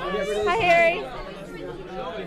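Speech only: a voice close by, about half a second in, over background chatter of other people.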